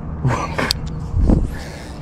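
A man's short, breathy vocal sounds, like exhales or a throat clearing, with a sharp click about two-thirds of a second in.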